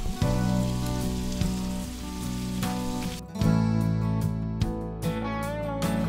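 Food sizzling on a hot flat-top griddle under background music. The sizzle stops abruptly about three seconds in, leaving the music alone.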